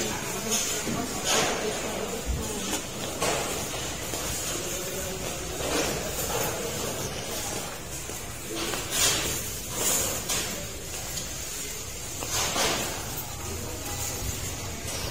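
Market hall ambience: a steady background hum with faint voices at a distance and scattered short clicks and knocks, about half a dozen spread through.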